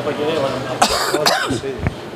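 A person talking in short phrases, with two harsh coughs around the middle.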